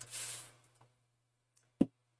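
A short hiss of a pump spray bottle misting water onto a silk-screen stencil transfer in the first half second, then a single sharp click near the end.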